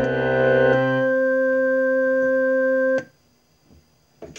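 Electronic keyboard holding an organ-like chord at a steady level. The lower notes drop out about a second in, leaving one note that cuts off abruptly about three seconds in.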